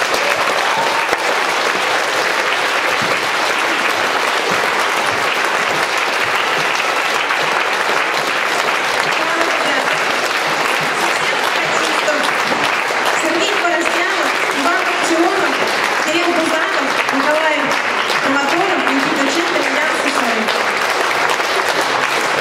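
Audience applauding steadily, the clapping starting just as the music ends. From about nine seconds in, a woman's voice over a microphone is heard above the applause.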